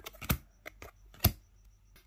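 Trading cards being handled: a few sharp clicks and snaps as cards are flipped through and set down, the loudest about a second and a quarter in.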